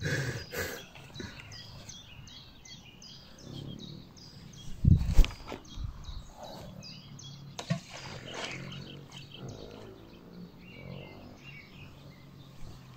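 A bird calling over and over with short, high, falling chirps, a few each second. Two dull thumps stand out, one a little before halfway through and another near two-thirds of the way.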